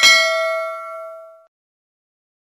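A single chime-like ding from an on-screen notification bell sound effect. It rings with several clear overtones and fades out over about a second and a half.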